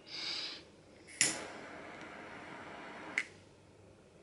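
A pocket gas lighter being used to light a piece of trioxane fuel bar: a brief hiss, then about a second in a sharp click as the lighter is struck. Its flame hisses steadily for about two seconds, and a second click follows as it is let go.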